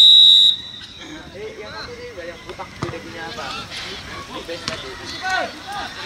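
Referee's whistle: one short, loud, steady blast right at the start, signalling the kickoff to restart play after a goal. Voices talking follow for the rest of the time.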